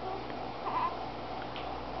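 A baby's brief, faint coo a little under a second in, over a steady room hum.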